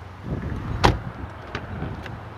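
Rear door of a 2013 Dodge Charger sedan being opened: low handling rumble, then a single sharp latch click a little under a second in.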